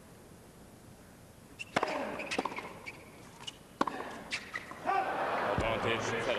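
Tennis stadium between points: a few sharp, separate knocks of a tennis ball bounced on a hard court, then crowd chatter that swells near the end.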